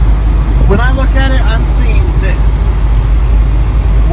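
Steady low road and engine rumble inside the cabin of a Toyota 4Runner cruising at highway speed, with a man's voice talking over it about a second in.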